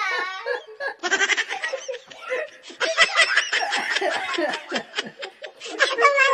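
People laughing in repeated bursts, with short breaks between the bursts.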